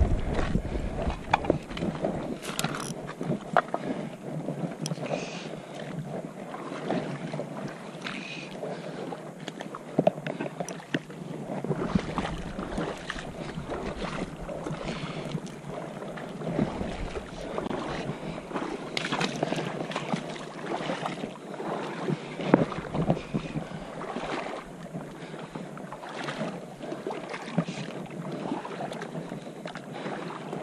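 Shallow river water running and lapping over rocks, with gusts of wind buffeting the microphone and scattered small knocks and splashes.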